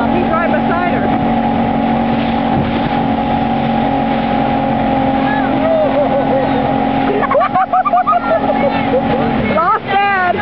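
Motorboat engine running steadily at towing speed over the rush of its wake, then throttled back shortly before the end, its pitch dropping. Voices call out over the engine several times, most around three-quarters of the way through.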